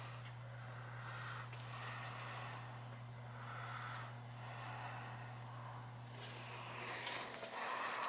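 Faint, steady low hum of the running hot-water heating equipment, with soft noise swelling and fading a few times.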